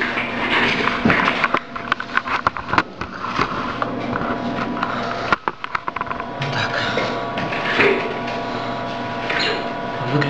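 Rustling and irregular clicks from a hand-held camera being moved and handled close to the body, with a faint steady hum underneath from about six seconds in.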